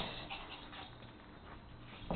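Faint scuffling of two small dogs play-wrestling on carpet, with a short knock right at the start.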